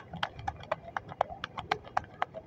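Sharp, evenly spaced clicking, about four clicks a second, like hard taps or hoofbeats.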